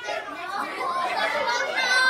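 Several children's voices talking and exclaiming over one another.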